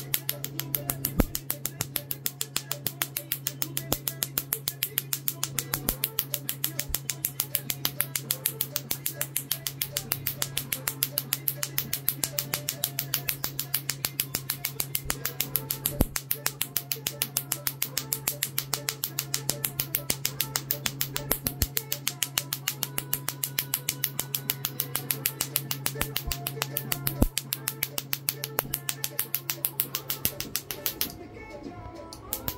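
A tattoo-removal laser handpiece firing pulse after pulse onto the skin, a rapid, even train of sharp snapping clicks, several a second, over a steady low hum.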